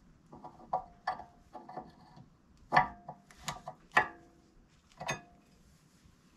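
Metal brake pad clips being pressed and snapped into a rear caliper bracket: a series of sharp metallic clicks and knocks, each ringing briefly, the two loudest about three and four seconds in.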